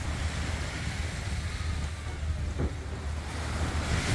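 Steady wind buffeting a phone microphone with a low rumble, over faint seaside ambience at the water's edge.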